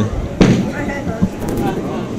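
A candlepin bowling ball gives one sharp knock about half a second in, followed by fainter clicks, over crowd chatter in the bowling alley.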